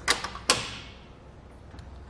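Saris MHS hitch bike rack's tilt mechanism being released and the loaded rack tipping away: two sharp metal clicks about half a second apart, the second clank ringing briefly as it fades.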